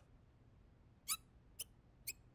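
Two brief high-pitched cartoon squeaks about half a second apart over a near-quiet background.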